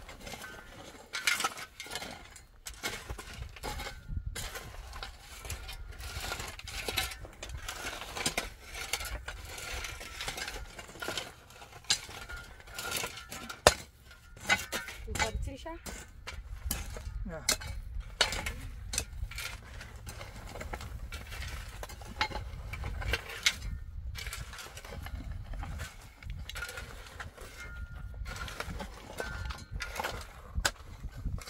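Two metal shovels scraping and digging into dry, stony dirt, an irregular run of scrapes and clinks with one sharper knock about halfway through.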